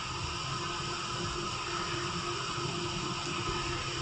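Steady hiss with a faint constant hum: background room tone picked up by the microphone.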